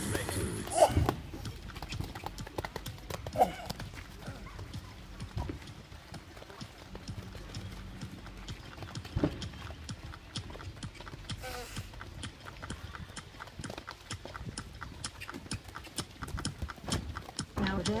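Horse's hooves on a wet sand arena at a canter: a quick, regular run of hoofbeats, with a few louder knocks.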